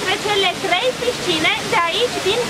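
A woman speaking over the steady rush of a small waterfall pouring into a river pool.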